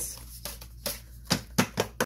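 Sheets of printed paper being handled and flipped by hand, with four short, sharp rustles or taps in the second half.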